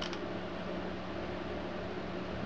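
Steady low hum of a running Dell Dimension 2400 desktop computer's cooling fans, with a faint click just after the start.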